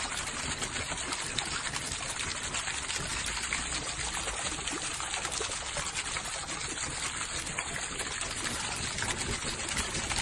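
Water from a fountain pipe pouring steadily into a round basin and splashing on its surface.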